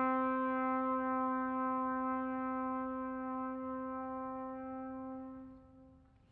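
Trumpet holding one long, steady low note, unaccompanied, that slowly fades and dies away near the end.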